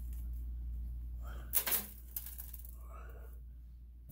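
Reptile soil poured from a cup into an empty clear plastic tub: a short rush of soil landing on plastic about one and a half seconds in, over a steady low hum.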